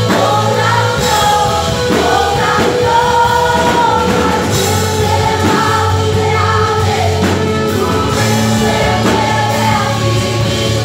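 Live worship band playing a Christian song in Spanish: several singers singing together, some notes held long, over electric guitars, keyboard and drums.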